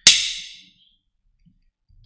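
A single sharp crack with a hissing tail that fades within about half a second.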